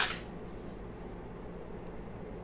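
Steady low hum and hiss of room background noise, with a brief rustle right at the start and a faint click near the end.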